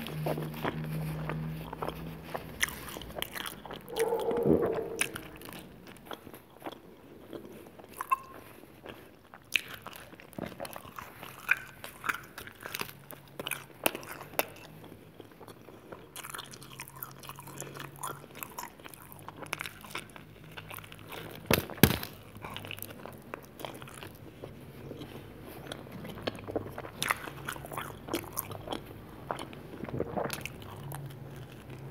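Close-miked eating of cheese pizza: biting into and chewing the charred crust, with crunching and many sharp mouth clicks. The loudest is a single sharp click a little over two-thirds of the way through.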